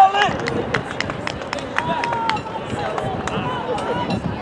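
Shouts and calls from players and spectators across an open soccer field, unclear at a distance, with a scattering of sharp clicks and knocks.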